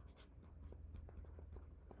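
Faint scratching and tapping of a stylus writing on a tablet, a scatter of short strokes over a low steady hum.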